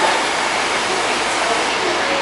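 Steady rolling noise of an AirTrain JFK car in motion on its elevated guideway, heard from inside the cabin as an even rush.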